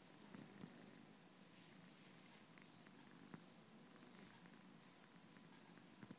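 A long-haired domestic cat purring faintly and steadily while it is massaged by hand, content. A single faint click comes a little past halfway.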